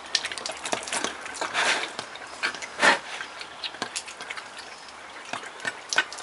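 Brown bear sucking and slurping milk from a feeding bottle: irregular wet smacks and gulps, the loudest about three seconds in.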